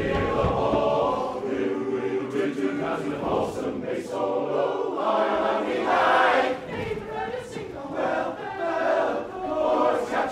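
Male barbershop singers singing a cappella in close four-part harmony, the chords changing every second or so.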